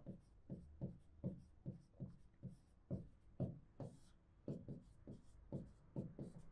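Marker pen writing on a whiteboard: a quick string of short, faint strokes, about three a second, with a brief pause in the middle.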